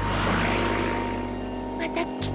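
Sound effect of a motorcycle and a buggy speeding along a rocky trail: a rushing engine-and-wind noise that swells in the first second and then fades. Steady, held background music tones run under it.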